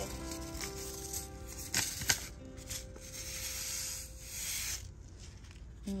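Soft background music with held notes, under handling noise. Two sharp clicks come about two seconds in, then a rustling hiss for a couple of seconds as kale seeds are shaken out of their paper packet into a hand.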